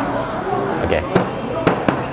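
Three sharp knocks and clacks from behind a café counter in the second second, with voices over them.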